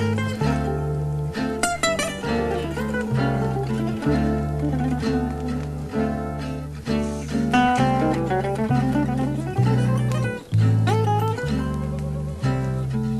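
Gypsy jazz: an acoustic lead guitar plays quick single-note runs with slides over a steady rhythm guitar and a double bass walking low notes about twice a second.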